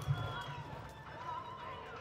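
Hoofbeats of a horse loping on soft arena sand, dull thuds loudest just at the start and fading after, with faint voices in the background.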